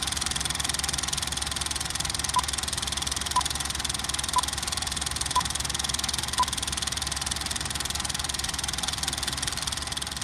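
Film projector running with a steady rapid clatter. Through it come five short, identical beeps one second apart, the countdown beeps of a film leader, the last on the count of one.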